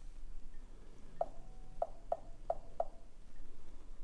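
Five soft, short clicks of key presses on a Dell XPS 15's Windows on-screen touch keyboard as letters are tapped on the touchscreen, irregularly spaced over about a second and a half, starting about a second in.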